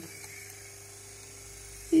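1978 Cadillac Eldorado windshield wiper motor running steadily on the bench, a low hum with one constant whine from the motor and its gear train, partway through its washer-timing cycle.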